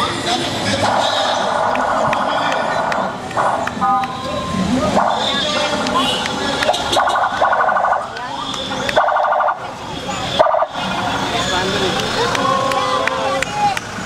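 A slow convoy of cars passing, with several bursts of warbling electronic siren and short horn beeps over crowd chatter and engine noise.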